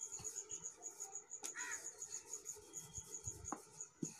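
A cricket chirping steadily in the background: high-pitched pulses about six a second. Under it come faint soft knocks from a wooden rolling pin rolling out a stuffed paratha on a board, with a sharp click about a second and a half in and another near the end.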